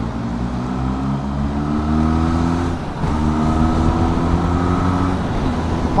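Motorcycle engine accelerating hard: its pitch climbs, drops at an upshift a little under three seconds in, then climbs again and eases off near the end, over steady wind rush.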